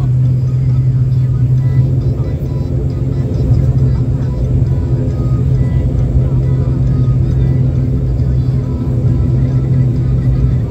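ATR-72 turboprop engine and propeller heard from inside the cabin: a loud, steady drone with a strong low hum at taxi power as the aircraft rolls along the ground.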